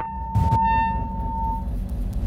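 Film soundtrack sound design: a single held high tone that fades out after about a second and a half, with a sharp hit about half a second in, over a low rumble.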